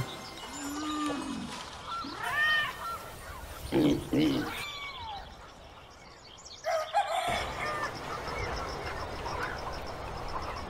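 A few short, arching animal calls in the first five seconds, each a brief pitched cry. After about seven seconds these give way to faint outdoor ambience with a fast, high, steady ticking like insects.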